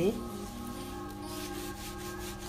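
Spread fingertips rubbing shampoo into wet hair and scalp, a soft scrubbing sound.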